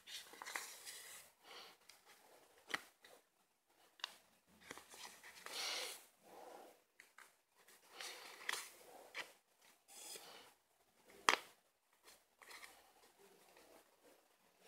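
Faint, irregular rustling and swishing of thread being drawn through needle lace stitches and hands handling the paper-card backing, with a few sharp clicks, the loudest about eleven seconds in.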